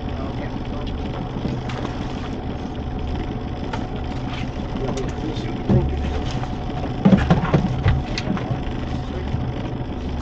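Small boat's outboard motor idling steadily, with a few short knocks and clatters from handling the catch, loudest about seven seconds in.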